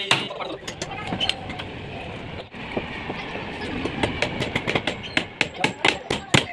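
Hammers striking chisels into an old concrete roof edge, chipping it away. The first half is a rough rattling noise with faint knocks; from about four seconds in come sharp, fast hammer blows, several a second.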